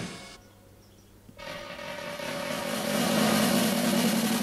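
A drum roll in a cartoon soundtrack. After the music dies away and about a second of near-quiet, it swells in from about a second and a half and holds steady, building suspense.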